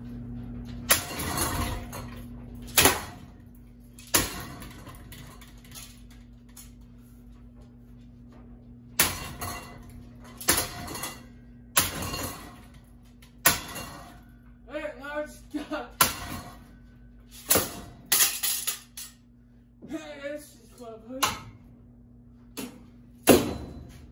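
A long pole repeatedly striking a hanging ceiling fan: more than a dozen sharp metal bangs at uneven intervals of a second or two, over a steady low hum.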